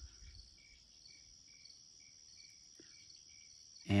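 Faint insect chorus: a steady high trill with a lower chirp repeating about twice a second.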